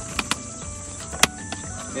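Metal latches and lid of an aluminium equipment flight case clicking open: two quick clicks, then a louder sharp snap about a second later and a smaller click just after. A steady high cicada drone runs underneath.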